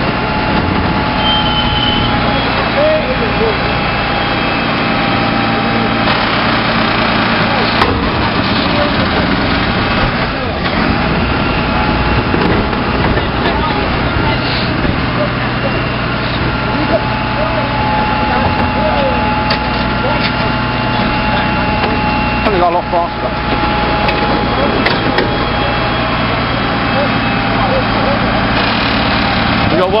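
Rear-loading refuse truck running steadily, its engine and hydraulic packer working with a continuous whine while it compacts a very full body.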